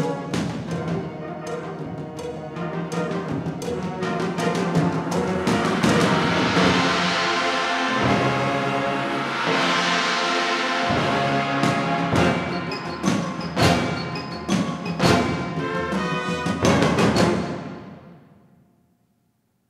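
School concert band playing a loud full-band passage of brass and woodwind chords with timpani and percussion accents, swelling twice in the middle. It builds to a run of sharp hits and a final cutoff just before the end, the hall's reverberation dying away.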